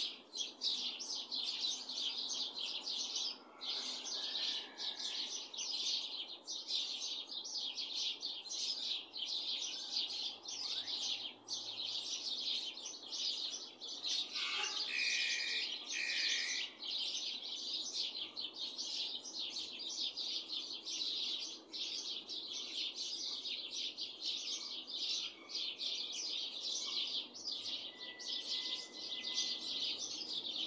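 Dawn chorus of many small birds chirping rapidly and continuously, all overlapping. About halfway through, two short clear whistled notes stand out above the chorus.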